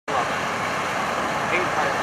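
Steady noise of freeway traffic and idling vehicles, with faint voices in the background.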